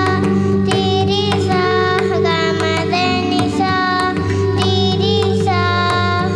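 A young girl singing into a microphone, holding long notes that bend and waver in pitch, over a steady low held accompaniment tone.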